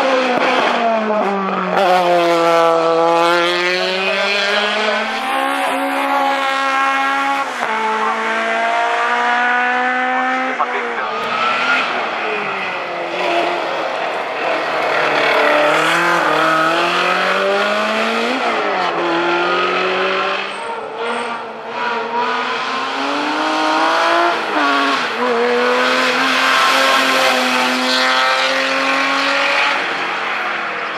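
Racing car engines revving hard up the hill, their pitch climbing and dropping sharply again and again at each gear change, as one car after another passes: a single-seater formula car, a Lotus Exige and a BMW E30 touring car.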